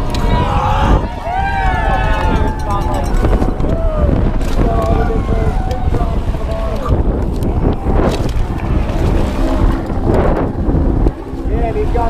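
Wind buffeting an action camera's microphone as a downhill mountain bike runs fast over rough dirt, the bike rattling throughout with a few sharp knocks from bumps and impacts.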